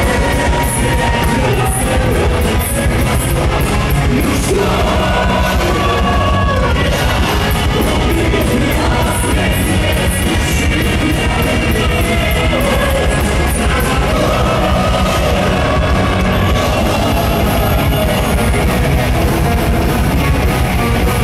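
Power metal band playing live: distorted guitars, bass and drums, with sung vocals over the top.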